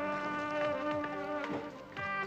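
Background music: sustained buzzy, reedy notes held in chords that shift pitch a couple of times, with a few light ticks.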